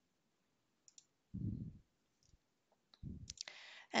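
A few quiet computer mouse clicks, with two short soft low thumps, then a brief breath just before speech resumes.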